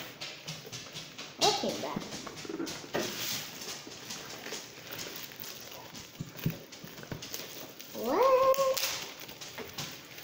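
Packaging being handled: a cardboard shipping box and bubble wrap rustling and crackling with many small clicks. A brief vocal sound comes about a second and a half in, and a longer drawn-out one near the end.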